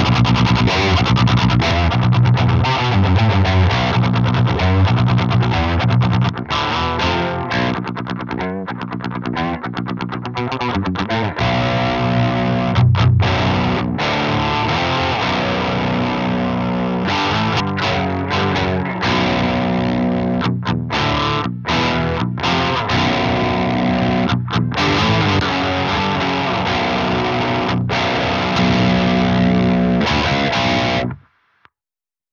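Heavily distorted electric guitar riffing through an Airis Effects Merciless HM-2-style distortion pedal, giving the buzzy death-metal 'chainsaw' tone. The riffs break into short stops a few times.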